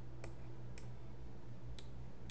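Three separate sharp clicks of a computer mouse, unevenly spaced, over a faint steady low hum.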